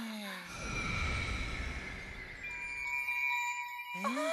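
Cartoon magic sound effect: a low rumble under a bright shimmering wash, with steady ringing high tones joining about halfway through.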